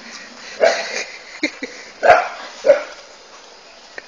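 A dog barking, several sharp barks in quick succession, the loudest about two seconds in.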